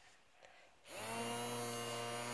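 The small electric motor of a toy bubble-gun fan switching on just under a second in, spinning up with a brief rising whine and then running with a steady hum.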